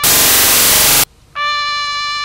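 A loud, harsh burst of noise lasting about a second, which cuts off suddenly. After a short gap a trumpet comes back in on a long held note.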